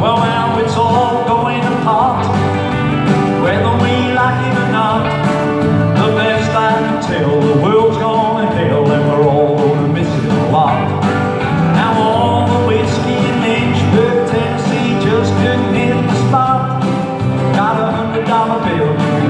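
Live country music played through a PA: a strummed acoustic guitar over a full low end, with a gliding lead melody line.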